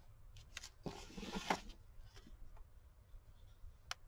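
A journal being turned and slid across a paper-covered table: a short rustling scrape of paper about a second in, with a few light taps and clicks around it.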